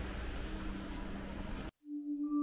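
Steady street background noise with a faint low hum, cut off abruptly near the end. After a moment of silence a single sustained ringing tone begins, the start of an intro music cue.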